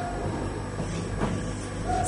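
Steady low electrical hum and background noise in a pause between spoken words. A faint held tone fades out in the first half second, and there is one faint tick a little past a second in.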